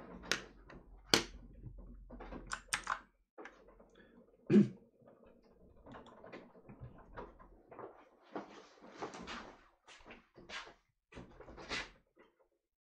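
Scattered knocks, clicks and shuffling as a person gets up from a desk chair and moves about a small room, with one much louder thump about four and a half seconds in.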